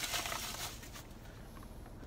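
Faint rustling and crinkling of packaging being handled as a small package is opened, dying down after about a second.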